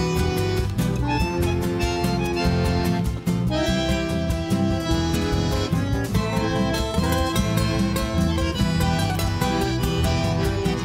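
Instrumental break in a folk song: a bandoneon plays the melody over electric bass and guitar with a steady beat.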